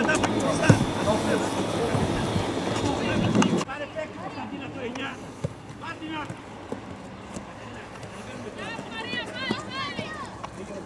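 Voices calling and shouting on an outdoor football pitch, with a sharp thump of a ball being kicked just under a second in. A little over three and a half seconds in, the sound cuts abruptly to quieter pitch sound with scattered calls, another single thump, and a run of short high calls near the end.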